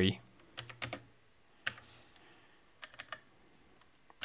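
A handful of key presses on a computer keyboard: short clicks in small groups, a few just after the start, one in the middle and a couple near the end.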